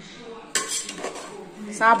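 Perforated steel skimmer ladle scraping and knocking against an aluminium pot while turning cooked biryani rice, with a sharp clatter about half a second in.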